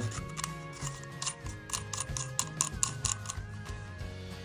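Background music with held, slowly stepping tones, over a run of small sharp clicks and ticks from the plastic cone and tube of a laser lens assembly being handled and fitted together.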